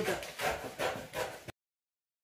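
Scissors cutting through brown pattern paper in several quick, evenly spaced snips. The sound cuts off suddenly about one and a half seconds in.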